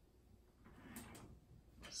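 Near silence in a small room: a faint rustle with two soft clicks about a second in.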